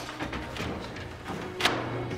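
A single sharp thud about one and a half seconds in, over faint background music.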